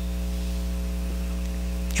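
Steady electrical mains hum: a low, even buzz with a stack of overtones.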